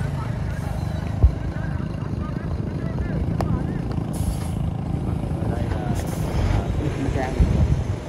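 Heavy dump truck's diesel engine running with a low, steady rumble as it passes close by. A single sharp knock sounds about a second in.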